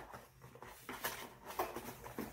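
Faint, irregular rustling and scuffing of a cardboard slime-kit box and the packaged items inside it being handled as a hand reaches in to pull something out.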